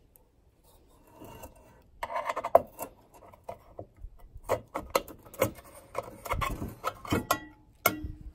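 A screwdriver scraping and clicking against a thin sheet-steel bowl, with sharp metal knocks and rubbing as the bowl is worked loose and lifted out of its oily metal cup. The sounds come as irregular clicks and scrapes, starting about a second in, with the loudest knock a little before the halfway point.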